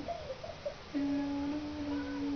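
A person humming: a wavering tune at first, then a steady held note from about a second in.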